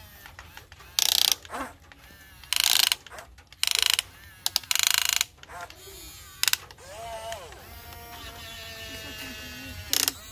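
Electric gear motors of a Huina radio-controlled toy excavator whirring in about five short bursts as the boom, arm and bucket are worked, then a steadier motor whine that rises and falls in pitch for the last few seconds.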